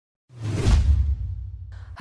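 Whoosh sound effect with a deep boom under it, for an animated news-intro graphic. It starts suddenly about a third of a second in and fades away over about a second and a half.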